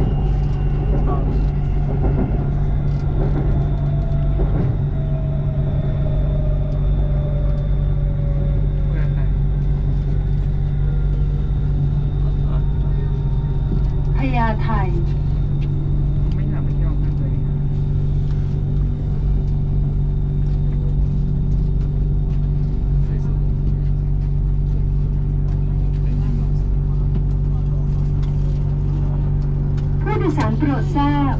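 Inside a BTS Skytrain car: a steady low rumble and hum, with an electric motor whine that falls slowly in pitch as the train slows into a station. About halfway through there is a short sound whose pitch wavers.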